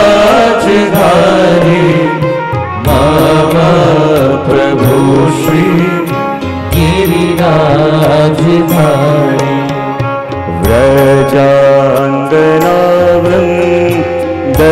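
Devotional kirtan: a voice singing a hymn with the wavering, ornamented line of Indian devotional singing, over instrumental accompaniment with steady held notes and regular percussion strikes.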